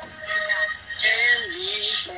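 Music with a singing voice: a few held notes sung in a line, with one note sliding down in pitch about halfway through.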